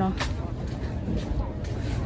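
Low rumbling outdoor background noise with a few faint clicks, following a woman's brief word at the start.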